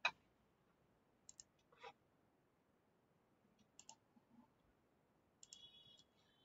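Near silence broken by a few short clicks: one right at the start, the loudest, then fainter pairs and single clicks spread through the rest.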